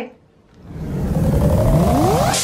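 Electronic riser sound effect for a logo sting: a swell of noise fades in about half a second in and builds steadily, with tones gliding upward near the end as it leads into electronic music.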